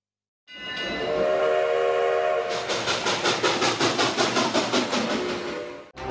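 Train horn sounding a held chord, then a steady clickety-clack of wheels over rail joints at about four beats a second.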